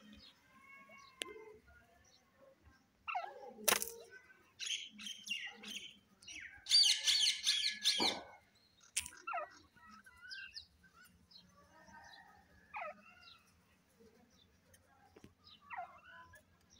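Birds chirping and calling in short, scattered notes and gliding whistles, with a dense burst of chattering about seven seconds in. Two sharp clicks stand out, one just before four seconds in and one about eight seconds in.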